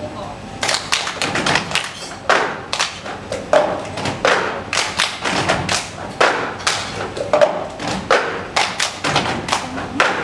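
Several people playing the cup song together: plastic cups thudded and tapped on a wooden table, mixed with hand claps, in a repeating rhythm that starts about half a second in.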